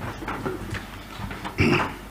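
Low room noise with small shuffling and handling sounds as people move at the podium, and a short, indistinct off-microphone voice sound near the end.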